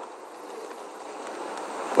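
A steady, even hiss of background room noise picked up by a desk microphone during a pause in speech, with no distinct events.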